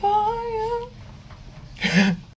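A young woman humming a held note that rises slightly, lasting about a second, in a small room. A short breathy burst follows near the end.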